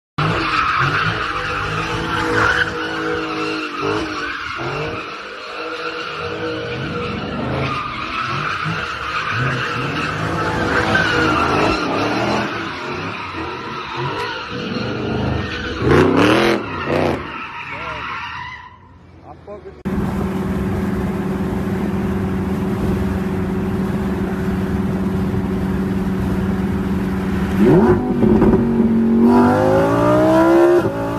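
A car's engine revving with tyres squealing in a burnout, with people's voices over it. After a cut about 20 s in, a Lamborghini Huracán's V10 engine drones steadily from inside the cabin, then revs up in rising sweeps near the end as the car accelerates.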